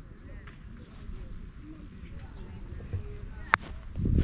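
Park golf club striking the ball on a tee shot: one sharp click about three and a half seconds in.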